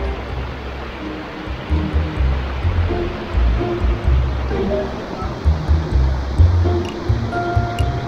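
A small mountain stream runs and splashes over granite boulders in a steady rushing hiss, broken by irregular low rumbles. Soft background music plays faintly over it.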